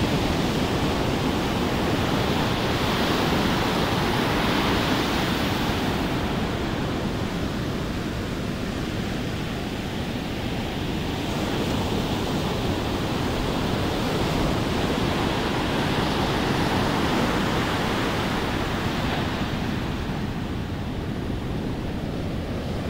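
Heavy ocean surf breaking and washing up a sand beach: a steady rush of waves that swells and eases as the breakers come in.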